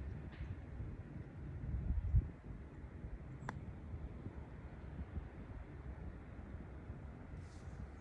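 A putter strikes a golf ball: one sharp click about three and a half seconds in, over a steady low rumble of wind buffeting the phone's microphone, which swells around two seconds in.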